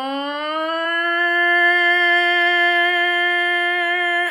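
A woman's voice imitating a tornado warning siren: a wail that rises in pitch, then levels off into one long steady tone.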